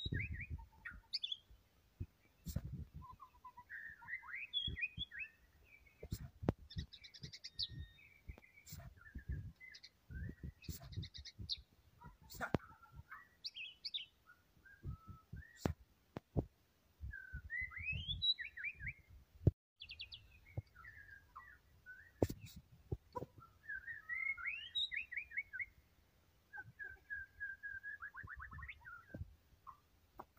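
White-rumped shama (murai batu) singing a long, varied song of whistled phrases, quick trills and sliding notes, phrase after phrase with short pauses. Scattered sharp clicks and low thumps fall between the phrases.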